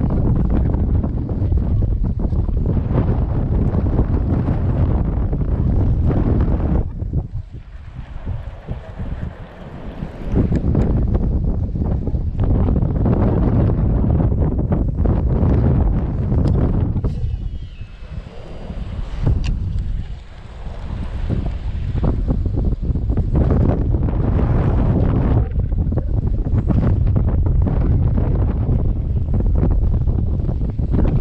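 Strong wind buffeting the microphone in loud gusts, easing briefly about seven seconds in and again around eighteen seconds.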